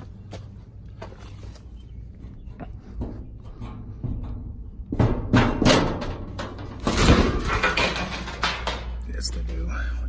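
Metal crawl-space access door being pulled open and moved aside against a concrete-block foundation. It scrapes and clatters loudly, in two bouts starting about five and seven seconds in.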